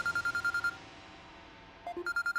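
Mobile phone ringing: a rapid trill of short, high beeps at one pitch, about ten a second. It stops under a second in and starts again for the next ring at the end.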